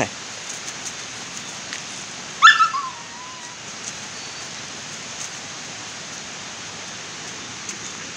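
A young Samoyed gives one short, high whine about two and a half seconds in. It jumps up sharply, then trails off in a thin falling tone, over a steady hiss.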